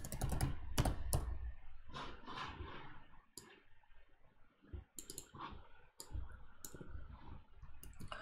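Keystrokes on a computer keyboard: a quick run of key presses in the first second or so, then scattered single key presses through the rest.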